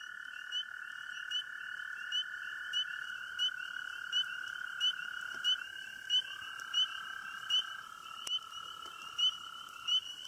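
Night chorus of calling frogs: a steady trill with short high peeps repeating about every 0.7 seconds over it.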